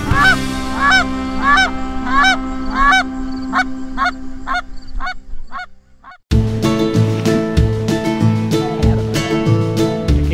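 A flock of geese honking overhead, calls repeating about one and a half times a second over a low steady tone. The honking fades out around six seconds in, and country-style music with guitar starts up.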